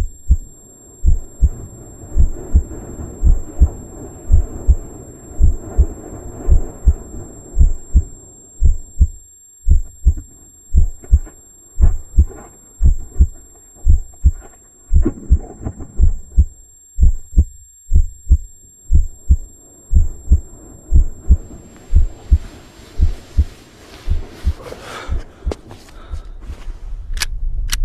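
Heartbeat sound effect: regular deep thumps repeating steadily over a dark, rumbling drone, with a rising swell of hiss building near the end.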